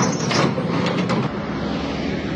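Caterpillar backhoe's diesel engine running under load while its bucket smashes into an aluminium-and-glass pavilion: a few crashes of bending metal frames and breaking panels in the first second or so over the steady engine.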